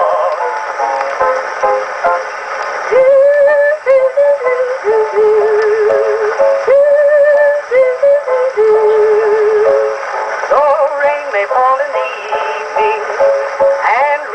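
Edison S-19 Diamond Disc phonograph playing a mid-1920s popular-song record: an instrumental passage between the vocal lines, its lead melody held in long notes with vibrato. The sound is thin, with little bass.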